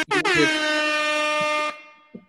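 Air horn: a short blast, then a long steady blast of about a second and a half that cuts off sharply, its pitch dipping slightly as each blast starts.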